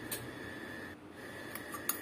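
Quiet kitchen room tone with a faint steady high whine that drops out briefly about halfway, and a couple of light clicks of utensils being handled, the clearest near the end.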